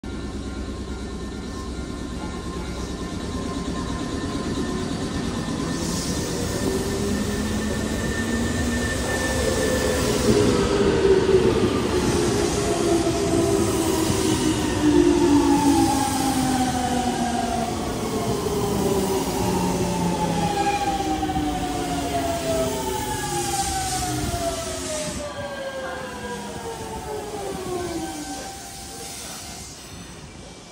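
Nankai 7100 series electric train pulling away, its motor whine rising in pitch over the first ten seconds or so. Then a Nankai 1000 series train runs in and brakes to a stop, its inverter and motor whine falling in pitch in several tones over wheel-and-rail rumble, dying away just before the end.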